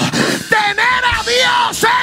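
A man's voice yelling loud, drawn-out cries through a microphone and PA, in several phrases of about half a second each, over church keyboard music.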